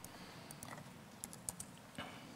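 Faint laptop keyboard clicks: a handful of light, irregular taps.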